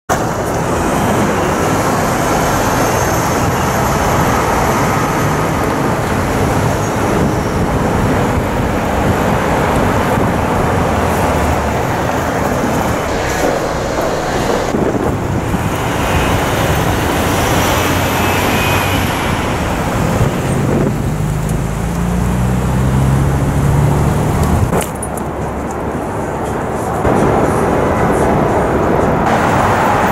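Busy city street traffic, with cars driving past. About two-thirds of the way through, one engine rises in pitch as it accelerates for a few seconds, then cuts off sharply.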